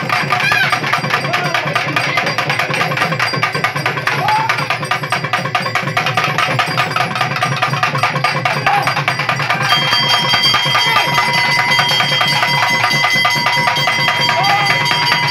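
Naiyandi melam temple band playing: fast, dense drumming under a wavering double-reed pipe melody. About ten seconds in, the pipe settles on a long held high note.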